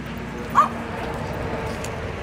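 A dog gives a single short, high yip about half a second in, over the murmur of a crowd's voices.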